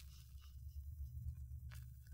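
Faint steady low hum of the recording's background noise between spoken lines, with a soft click near the end.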